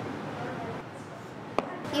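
Low, even classroom room noise with a single sharp knock about one and a half seconds in.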